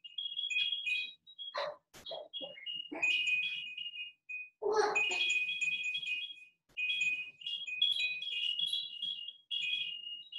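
A high-pitched electronic chiming tune, a few notes repeating in short phrases with brief pauses between them. A few short soft sounds fall in the pauses.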